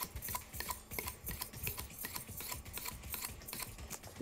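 Light, irregular scraping strokes with small clicks: a kitchen knife blade being drawn across the rim of a ceramic mug to sharpen it.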